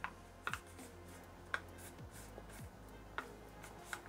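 A few faint, sharp clicks and taps from fingers pressing on the plastic casing of a laptop battery pack, over faint background music.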